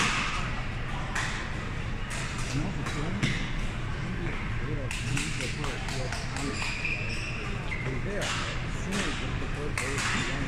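Badminton rackets striking a shuttlecock, sharp clicks that echo around a large hall, with players' voices in between rallies.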